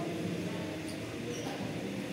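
Background ambience of an indoor badminton hall between rallies: a steady murmur of distant voices, with two faint short squeaks about a second in and again a little later.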